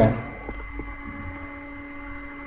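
Steady low electrical hum with a few faint ticks, the room tone of a voice recording in a pause between sentences.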